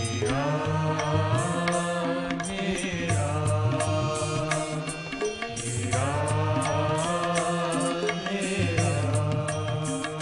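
Live Indian devotional bhajan music from a band with harmonium, tabla, synthesizer and octopad, with melodic phrases that slide down in pitch about every three seconds over a pulsing low bass.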